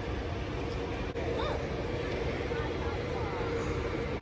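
Outdoor urban ambience: a steady low rumble with a faint steady hum and distant, indistinct voices.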